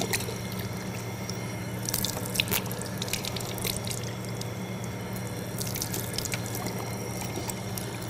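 Water running from a tap into a sink basin and splashing over hands and a forearm as they are washed, with a few brief splashes now and then.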